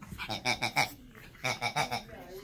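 A rubber squeaky dog toy being squeezed in quick runs: two bursts of about four sharp, high squeaks each.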